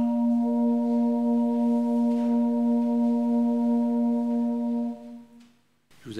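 Electronic keyboard holding a soft, organ-like chord, with a higher note joining about half a second in; the chord fades out at about five seconds.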